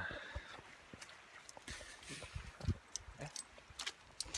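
Someone moving through dry leaves and brush: irregular crackles and rustles, with soft low thumps about half a second in and near the middle.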